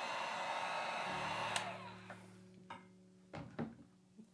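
Heat gun blowing over wet acrylic paint, heating the pour to bring cells up through the silicone-oil layers. It is switched off with a click about one and a half seconds in, and its blowing fades away over the following second. A few faint knocks follow near the end.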